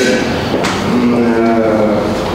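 A man's voice holding a drawn-out filler sound, a long 'uh' at one steady pitch for about a second, in a pause mid-sentence.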